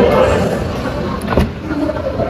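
Rear door of a Mitsubishi Xpander Cross being opened: the outside handle is pulled and the latch gives one sharp click about one and a half seconds in, over general handling noise.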